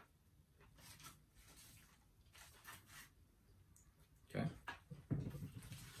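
Faint chewing of a crispy fried shrimp taco: scattered soft crunches and small mouth clicks, with a short spoken word near the end.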